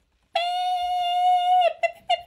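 A car horn honking: one long, steady honk of about a second and a half, then short quick honks at the same pitch.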